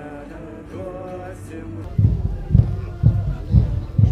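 A man singing a slow chant-like folk melody. About halfway through it gives way to loud music with a heavy, steady bass-drum beat, about two beats a second.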